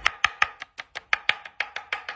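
Kitchen knife chopping fresh cilantro on a wooden cutting board: a quick, steady run of knocks, about six strokes a second.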